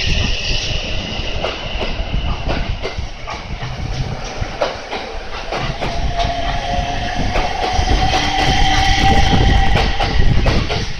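JR Central electric train moving along a station platform, its wheels clacking over the rail joints. From about six seconds in, the traction motors' whine rises slowly in pitch as the train picks up speed, and the sound grows louder toward the end.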